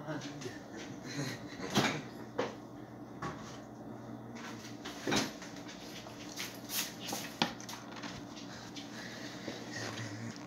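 Boeing 737 cabin noise in the climb: a steady low hum under an even hiss, broken by scattered clicks and knocks, the sharpest about two seconds in and again about five seconds in.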